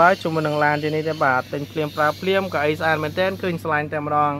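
A person speaking continuously, with a steady low hum underneath.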